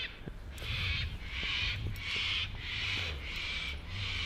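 A bird calling over and over in short harsh calls, about two a second, over a low steady hum.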